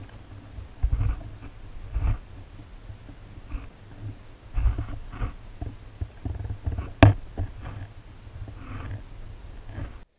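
Muffled low rumbles and knocks picked up by a camera moving underwater in a garden pond, with one sharp click about seven seconds in.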